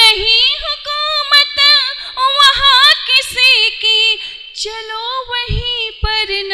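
A woman singing Hindi-Urdu verse into a microphone, unaccompanied. It is one voice holding long notes that waver and slide in ornamented turns.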